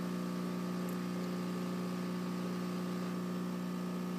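Hot air rework station blowing, a steady hum with a low tone and a hiss of moving air, as solder under a surface-mount crystal is reflowed.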